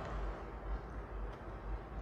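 Quiet room tone with a steady low hum, and a few faint clicks from laptop keys being pressed.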